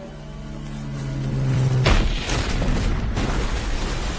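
A low held tone swells for nearly two seconds, then a loud explosion hits, followed by a heavy rumble of blast and debris that surges again about three seconds in.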